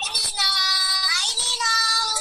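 A child's voice singing two long held notes, heard through a video call.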